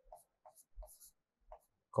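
Faint taps and scrapes of a stylus writing on an interactive display screen: about five short strokes as letters are drawn.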